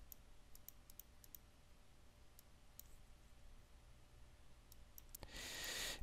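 Near silence with faint, scattered clicks from a computer keyboard and mouse as tolerance values are typed in and boxes ticked, most of them in the first second and a half. A soft breathy hiss near the end.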